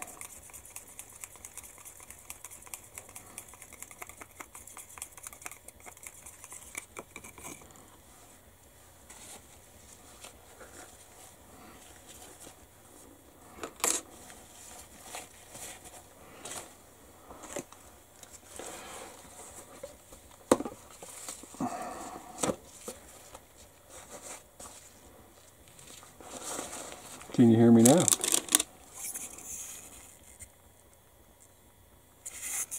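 Small clicks and scrapes of hobby paint being stirred and handled while an airbrush is made ready, densest in the first few seconds, then scattered knocks. A louder burst with a short hum comes near the end.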